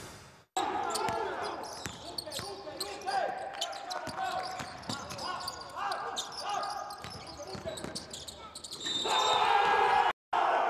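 Basketball game sound from the court: a ball bouncing on the hardwood floor in sharp thuds among voices. The sound swells louder about a second before the end as the play reaches the basket.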